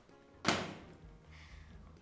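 A single sharp hit about half a second in, ringing off over about half a second, with faint music underneath.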